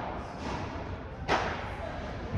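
Padel ball struck with a racket during a rally: a faint hit about half a second in, then a sharp, loud hit that echoes through the indoor hall.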